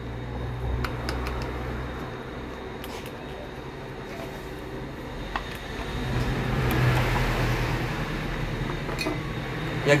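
A few sharp clicks and light scraping as a screwdriver works on a pedestal fan's plastic motor housing and the housing is pulled apart. Under them is a steady low hum that swells for a couple of seconds in the second half.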